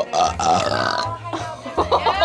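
A person burping, one long, loud burp lasting over a second, with a shorter burp just before the end.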